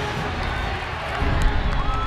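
Football stadium crowd noise with scattered shouting voices during a live play, and a sharp knock about one and a half seconds in.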